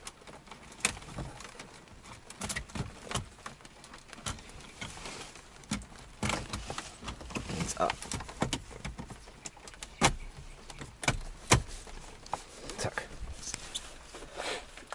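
Irregular plastic clicks and knocks as a round gauge pod is pushed and worked into the centre air-vent opening of a VW Golf 3 dashboard.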